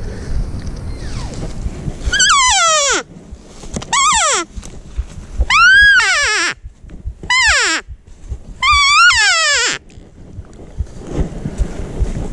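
Five loud cow-elk mews, nasal calls that mostly slide down in pitch, spaced about a second and a half apart from about two seconds in to near the ten-second mark, the kind of cow talk used to call in a bull elk. Low rustling of footsteps through brush fills the gaps and the last couple of seconds.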